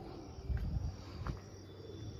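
Faint outdoor ambience with a thin, steady high insect chirr, broken by a few dull low thumps about half a second in and again past the one-second mark.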